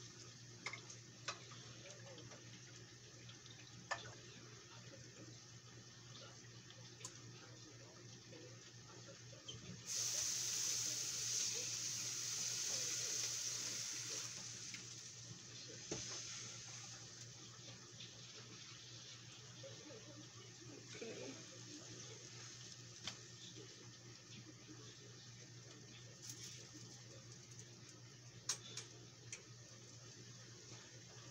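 A tap running: a rush of water for about four seconds, starting about ten seconds in and then tailing off. Around it are small kitchen clinks and handling knocks over a steady low hum.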